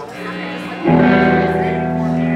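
Amplified electric guitar starting a song: a quiet held note, then a little under a second in a loud chord that rings on and sustains.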